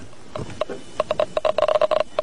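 Gamma radiation counter clicking irregularly, sparse at first and then quickening from about a second in, as it is held to a hand that has just been wiped of radioactive powder: residual radioactivity still on the skin.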